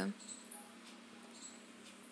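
A spoken word ends right at the start, followed by faint room hiss with a few brief, faint high-pitched squeaks.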